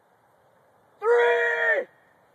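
A young man's voice letting out one long, high, steady-pitched yell of just under a second, starting about a second in.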